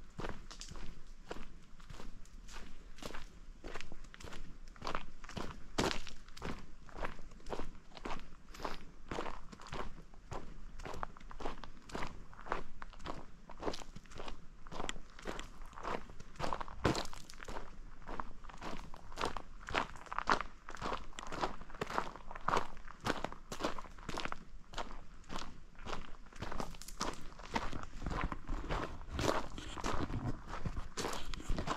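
Footsteps of a hiker walking steadily along a dry dirt forest trail, each step a short crunch, at an even walking pace throughout.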